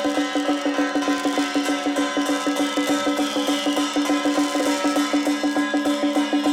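Traditional drum-and-gong percussion accompanying a Song Jiang Formation martial-arts bout: strokes beaten in a fast, even rhythm over gongs ringing on a steady pitch.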